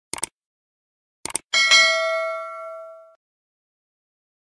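Subscribe-button animation sound effect: two quick mouse clicks, another pair of clicks about a second later, then a single bell ding that rings out and fades over about a second and a half.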